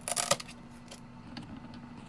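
Handling clatter: a quick run of sharp clicks and knocks in the first half-second, then a few faint scattered clicks, as a plastic power cord and the light box are handled. A steady faint low hum runs underneath.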